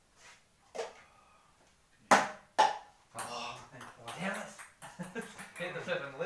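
A ping-pong ball bouncing on a beer pong table: a light tick, then two sharp, loud bounces about half a second apart, followed by voices.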